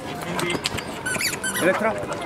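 A quick run of high squeaks about a second in, like a squeaky toy a handler uses to catch a show dog's attention, over the chatter of voices.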